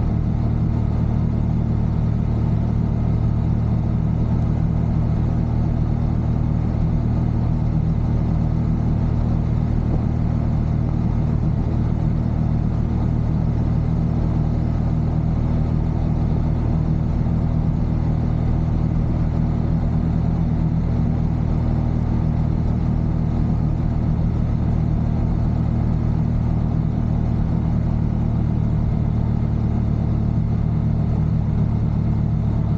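Motorcycle engine running steadily while cruising, an even low drone that holds the same pitch throughout.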